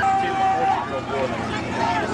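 People shouting and calling out around a football field, untranscribed. One voice holds a long call at the start, followed by shorter shouts.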